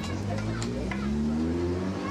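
Café ambience: several patrons' voices talking over one another, with a steady low drone underneath and a few short, light clinks.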